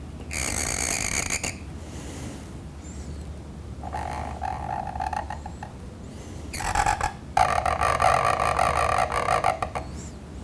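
Reed pen (qalam) scratching across paper as letters are written, in three strokes: a short one near the start, another around the middle, and a longer one over the last few seconds.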